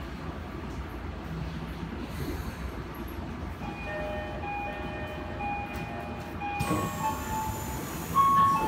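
Chiyoda Line subway train running, heard from inside the car: a steady rumble, joined about halfway through by high, steady whining tones, and a burst of hiss near the end.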